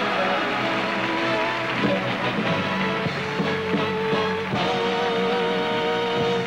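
Stage band music with long held notes, with audience and contestants applauding beneath it.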